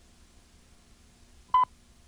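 A single short 1 kHz beep, the sync 'two-pop' of a film countdown leader, sounding on the TWO frame. It stands alone over faint hum and hiss.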